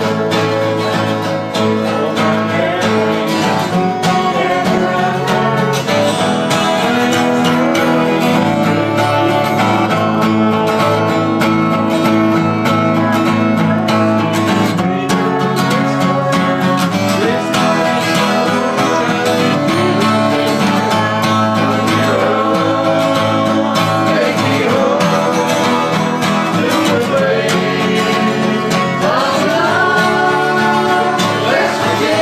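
Several acoustic guitars strummed together in a steady country-style accompaniment, with voices singing along.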